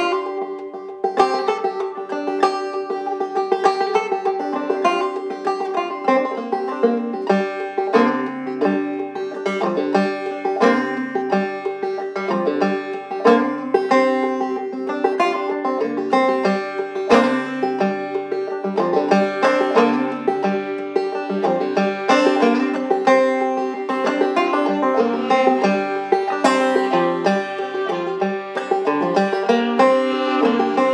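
A banjo picking a brisk, steady tune, with a fiddle bowing along: the instrumental introduction of a folk song before the vocals. Lower notes join in about eight seconds in.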